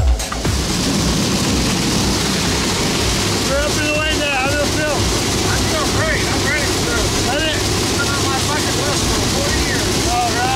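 Steady, loud engine and wind noise inside a skydiving jump plane's cabin as it climbs after takeoff. From about three and a half seconds in, indistinct raised voices come through over the noise.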